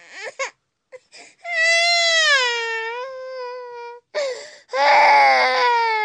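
A baby crying: a few short whimpers, then a long high wail that sinks slightly in pitch, followed by two more cries near the end.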